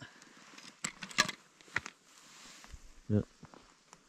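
Light clicks and rustles of fishing line being handled and pulled up by hand from an ice-fishing hole, with a brief grunt-like voice sound about three seconds in.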